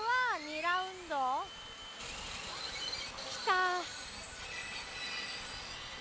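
Several high-pitched, sliding vocal calls in the first second and a half, and one more about three and a half seconds in. Under them runs the steady din of a pachinko parlour, with the electronic tones of the machines.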